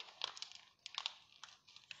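Faint crinkling and scattered light ticks of a soft plastic wet-wipes packet being handled.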